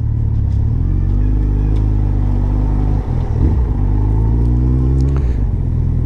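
Suzuki Hayabusa's inline-four engine through a Yoshimura R-77 exhaust, pulling in gear with the pitch rising, a brief dip about three seconds in as it shifts, then rising again before easing off near the end.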